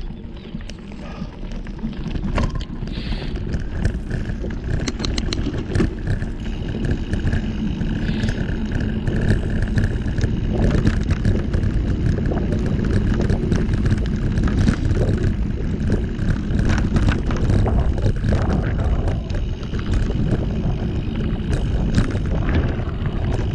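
Mountain bike ridden over a rough dirt and gravel track. Knobby tyres rumble continuously, wind buffets the microphone, and frequent short clicks and rattles come from the bumps.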